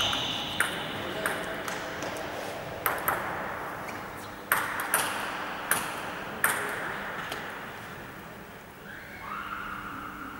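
Table tennis ball clicking off bats, the table and the floor: single sharp knocks at irregular gaps, each followed by a short echo in a large hall.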